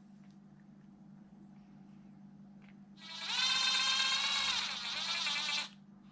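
Cordless drill-driver running for about two and a half seconds from about three seconds in: a steady high whine, driving a screw into the plastic of an RC car chassis. Before it, only faint handling noise over a low hum.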